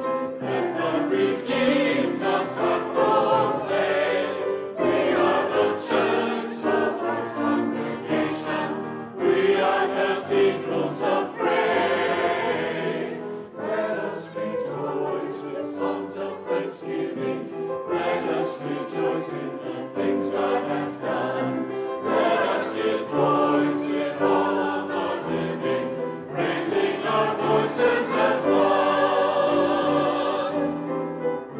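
Mixed church choir of men's and women's voices singing an anthem, with grand piano accompaniment.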